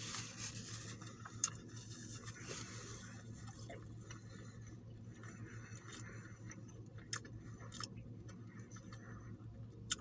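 A person quietly chewing a mouthful of grilled chicken sandwich, with faint mouth clicks and small smacks now and then.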